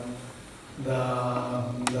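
A man's speaking voice: a short pause, then the word "de" drawn out and held at one steady pitch for about a second as he hesitates mid-sentence. A brief tick sounds near the end.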